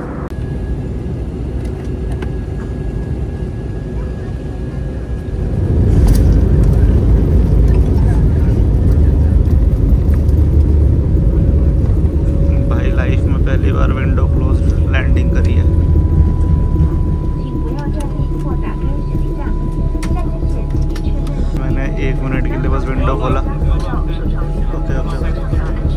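Jet airliner cabin noise: a steady engine drone, then about six seconds in a sudden, much louder low rumble, typical of touchdown and the landing roll with reverse thrust, which eases off at around seventeen seconds. Faint voices underneath.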